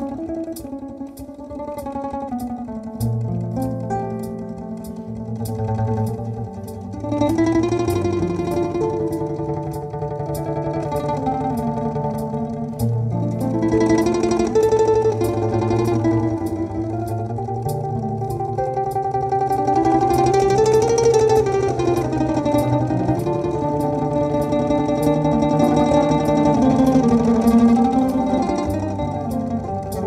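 Domra improvisation built up with a loop processor: a plucked domra melody rises and falls over held, looped low bass notes that change pitch every few seconds, with a light steady tick about twice a second.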